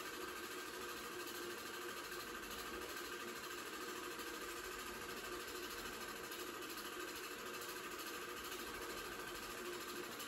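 Home-movie film projector running, a steady mechanical whir that does not change.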